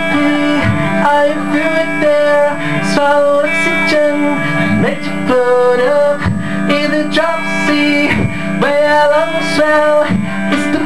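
Solo guitar played live, a strummed chord figure repeating without a break.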